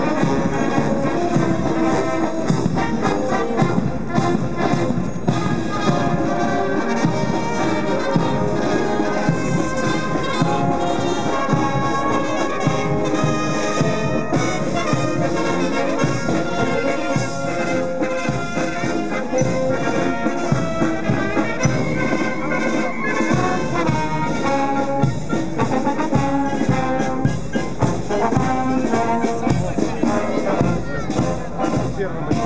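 Military brass band playing as it marches, with trumpets, trombones and tubas, steady and loud throughout.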